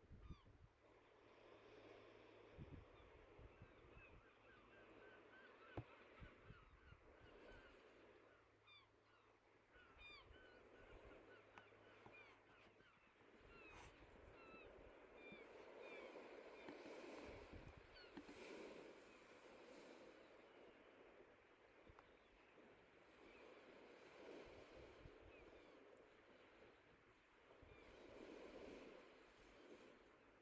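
Near silence with faint, distant bird calls: many short chirps through the first half, fewer later.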